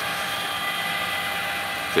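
Barbecue rotisserie's electric motor running, turning a turkey on the spit: a steady whine over a hiss.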